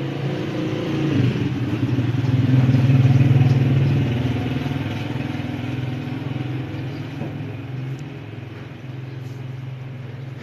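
A motor engine droning steadily with a low hum, growing louder to a peak about three seconds in and then slowly fading.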